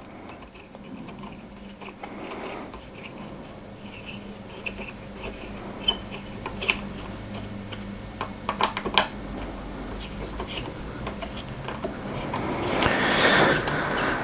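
Hex key tightening 6 mm cap head screws in a metal toolpost block: scattered light metallic clicks and taps as the key seats in the screw heads and turns.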